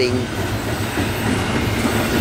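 Loaded double-stack intermodal well cars of a freight train rolling past, a steady rumble of steel wheels on rail.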